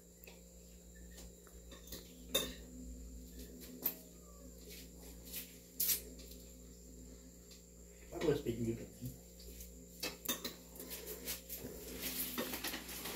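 Spoons clinking and scraping on plates and pots during a meal, a few scattered sharp clinks over a quiet room, with a brief voice about eight seconds in.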